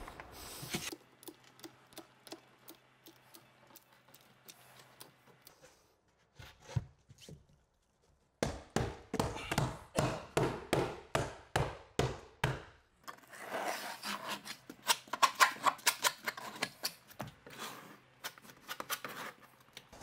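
Hand-pumped sausage-tube sealant gun being worked: scattered light clicks at first, then after a short pause a regular run of trigger strokes about two a second for several seconds, then quicker irregular clicking as the sealant is laid.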